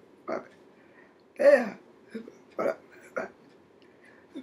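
A woman's voice in short, separate syllables, about five in four seconds, with pauses between them. The loudest comes about one and a half seconds in.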